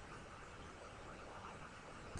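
Faint steady hiss of room tone and microphone noise, with no distinct sound events.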